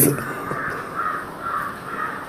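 Crows cawing in the background, a few short calls.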